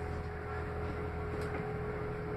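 Cabin sound of a Northern class 195 diesel multiple unit running at speed: a steady low rumble from the wheels and underfloor engine, with a constant high whine over it.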